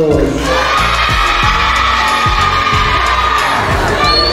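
Children cheering with one long, high, slightly rising shout held for about three seconds, over background music.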